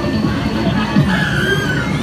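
Arcade din: music and electronic game tones. A gliding tone comes in about a second in.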